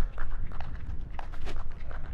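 A football being volleyed back and forth between two players: several sharp thuds of foot striking ball, over a steady low rumble.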